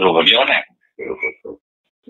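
A man speaking, breaking off after about half a second into a few short syllables, then a brief pause near the end.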